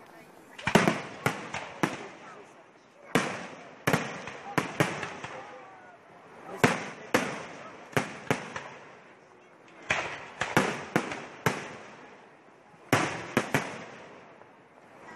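Fireworks display: groups of two to five sharp bangs come about every three seconds, each group fading away in a trailing echo.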